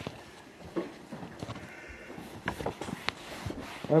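Quiet handling sounds of Bible pages being turned: a few scattered light clicks and rustles.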